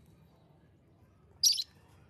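A parakeet gives one short, harsh, high-pitched call about one and a half seconds in.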